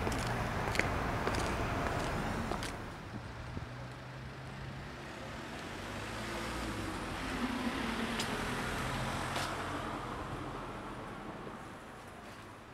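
Road traffic noise from cars on a city street. The rumble swells and fades as vehicles pass, with a few sharp clicks.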